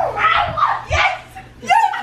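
Young women shrieking and shouting in excitement as a handstand round ends, with a couple of dull low thumps in the first second. Speech picks up again near the end.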